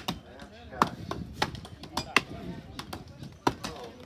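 Axes chopping into logs in an underhand wood chop: sharp wooden chops at an uneven rhythm from several choppers at once, some strokes loud and close, others fainter.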